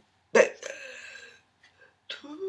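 A woman's wordless vocal sound that starts abruptly and loudly about a third of a second in and is drawn out for about a second.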